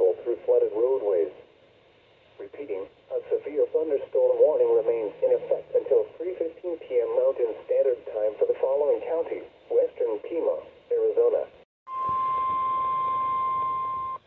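NOAA Weather Radio's synthesized voice reading a weather warning through a Midland weather radio's small speaker. About twelve seconds in, the voice stops and a steady high tone, the 1050 Hz warning alert tone, sounds for about two seconds.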